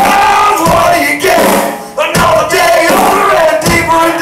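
Live rock band playing loud: electric guitar, bass guitar and drum kit with male vocals. The band drops out briefly just before halfway and comes back in together.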